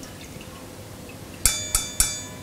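Faint dripping of oil from a freshly fried chakali back into a steel pan of hot oil, then, about one and a half seconds in, two sharp metallic clinks with a ringing tail as the metal slotted spoon is knocked against the steel pan to shake off the oil.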